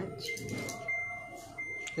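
Samsung front-load washing machine's control panel beeping as its temperature button is pressed: a string of beeps at one high pitch, each up to about half a second long, with short gaps between them.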